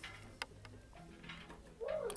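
Two faint plastic clicks as a toy microscope is handled and tried, the second under half a second after the first, over faint background music.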